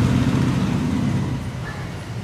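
Low rumble of road traffic going by, fading away over the two seconds.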